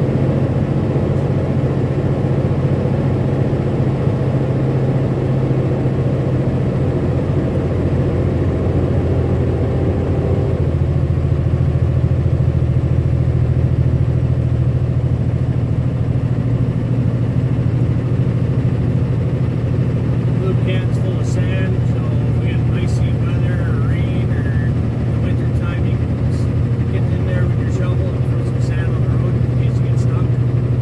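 Steady low drone of a pickup truck's engine and tyres while cruising on a paved road, heard from inside the cab. Faint voices come in from about two-thirds of the way through.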